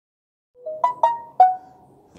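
A short electronic chime of about five quick pitched notes, starting about half a second in; the last note is lower and rings out as it fades.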